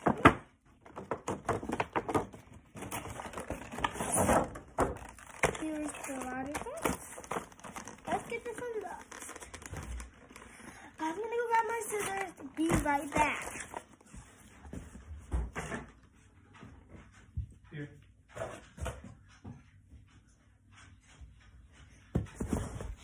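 Cardboard and plastic toy packaging being torn open and handled: rustling, tearing and short knocks, with a child's voice in short stretches. The handling thins to occasional faint knocks over the last several seconds.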